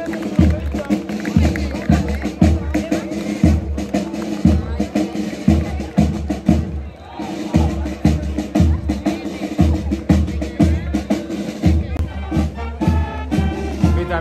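Brass marching band playing a march, with a bass drum keeping about two beats a second under the brass, and the melody rising higher near the end.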